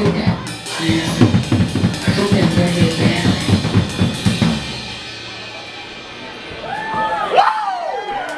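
A live band plays loud, with a drum kit hitting hard, until about four and a half seconds in, when the song stops and the cymbals ring out. A voice shouts with a rising and falling pitch near the end.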